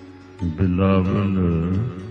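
A male voice singing Gurbani kirtan holds one long, wavering note for about a second and a half, starting about half a second in. It sings over a steady sustained instrumental accompaniment.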